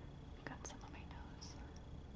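Faint, close-miked whispery mouth sounds: soft breaths with a few small lip clicks about half a second in and again near a second and a half.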